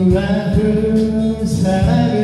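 A man singing a slow Korean ballad into a karaoke microphone over the machine's backing track, holding long notes.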